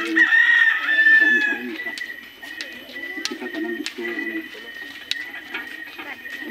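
A rooster crows once near the start, a single call about a second and a half long, over faint background voices.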